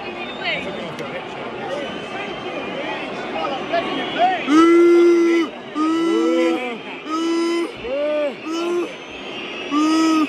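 Football crowd singing a chant, with a fan right by the microphone joining in loudly from about four and a half seconds in, in a run of short held notes.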